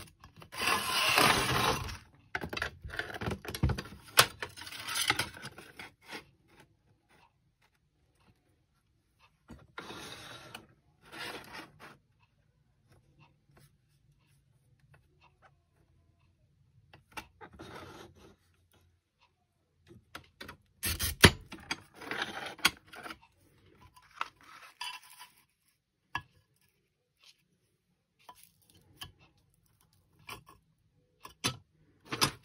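Intermittent handling noise: card templates and a clear strip being slid, scraped and set down on a gridded plastic work surface, in bursts of one to a few seconds with quiet gaps, and a sharp knock about two-thirds of the way in.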